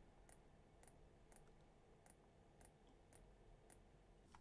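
Near silence with faint computer-mouse clicks, evenly spaced about every half second.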